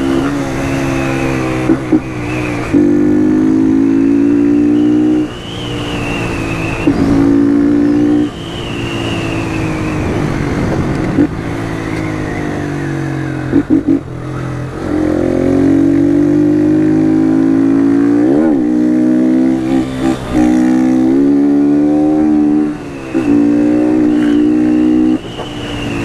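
Motorcycle engine heard from the rider's seat as the bike is ridden along a street. The engine note climbs and falls several times, with brief dips in loudness between pulls.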